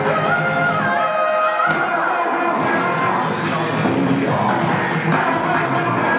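Upbeat pop dance track with sung vocals over a synth melody and steady beat, played for the dancers to perform to.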